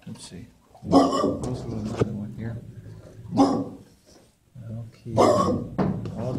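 Dog barking in three loud bursts, the first longest, the others short.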